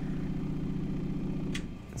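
Voxon VX1 volumetric display running with its protective dome off: its screen resonating up and down at 15 Hz makes a steady low hum, mostly turbulent airflow. The hum dies away about a second and a half in as the display is switched off.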